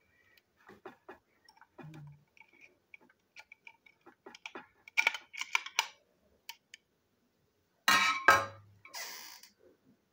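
Plastic toy train parts clicking and tapping as they are handled and turned over in the hands, with two louder knocks on the tabletop about eight seconds in, followed by a short scraping rustle.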